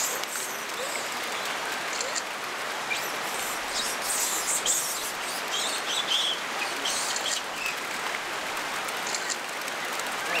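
Steady watery hiss at a steaming hot-spring pool, with brief high chirps scattered through.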